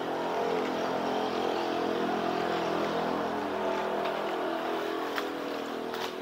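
An engine running steadily with an even hum, its pitch shifting only slightly.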